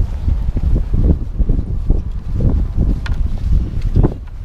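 Wind buffeting a handheld action camera's microphone: a loud, uneven low rumble that swells and dips, with a few faint clicks near the end.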